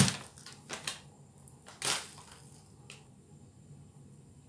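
A few sharp clicks and knocks of kitchen items being handled, the loudest right at the start and another about two seconds in, with small ticks and quiet between.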